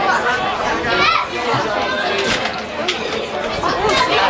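Spectators chatting, several voices overlapping with no pause.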